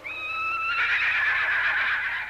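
A horse neighing: one long whinny that starts on a high, held pitch and turns rougher before fading.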